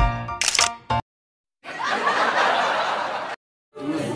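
Edited soundtrack: background music stops just under half a second in, then a short sharp click-like sound effect. A gap of dead silence follows, then about two seconds of even hissing noise, and a second silent gap near the end.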